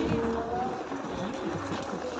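Indistinct chatter of several people outdoors, with no clear words, over a low steady rumble.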